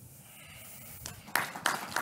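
Audience applause. Faint room hiss gives way after about a second to scattered claps, which thicken into denser clapping near the end.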